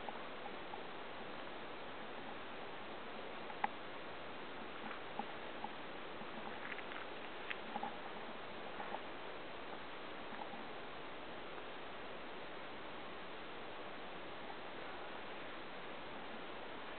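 Steady hiss with scattered small clicks and snaps of footsteps through overgrown undergrowth, the sharpest snap about three and a half seconds in.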